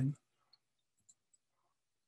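Near silence in a pause of speech, with a few very faint short clicks about half a second and about a second in.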